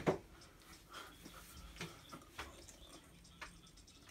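Quiet room tone with a brief soft sound at the start, then a few faint, short clicks and soft noises scattered through.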